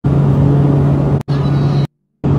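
Loud, steady engine drone heard inside a small aircraft's cabin in flight, with a strong low hum. It drops out for an instant just past a second in and cuts off shortly before the end.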